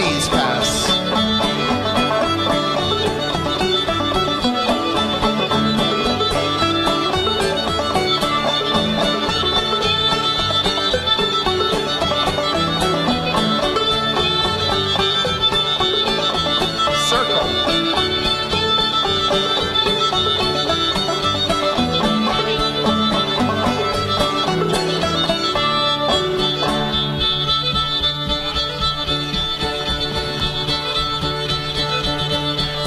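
Live string band playing a lively contra dance tune: fiddle carrying the melody over plucked-string accompaniment, with a steady driving beat.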